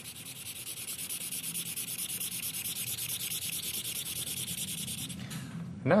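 Broad-tipped felt marker rubbing on paper as it colours in a shape, in rapid, even back-and-forth strokes, several a second, stopping about five seconds in.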